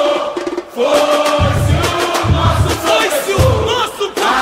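Samba-enredo recording: a chorus of voices sings over a samba school percussion section, with deep drum beats recurring about once a second.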